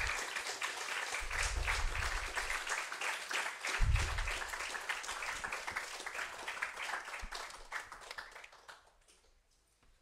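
Audience applauding, dense clapping that thins and fades out about eight or nine seconds in, with a few low thumps, the loudest about four seconds in.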